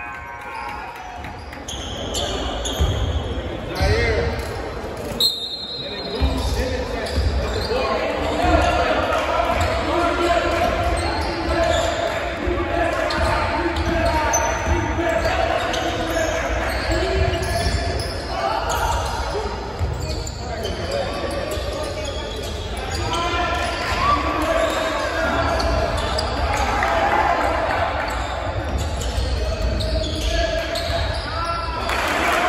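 A basketball bouncing on a hardwood gym floor during live play, with players and spectators calling out. The sound echoes in the large gym hall.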